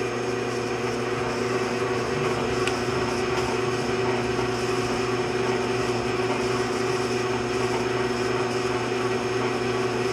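A vintage Shopsmith 10ER running steadily under power: its AC motor runs at a constant 1725 RPM and drives the headstock through the speed changer and slow-speed pulley reduction. It gives an even, steady hum with a few held tones.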